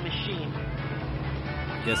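Background music from the cartoon soundtrack, with steady held notes. A man's voice comes in near the end.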